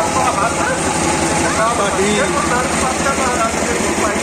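A diesel generator running steadily with a fast, even beat, with several people's voices talking over it.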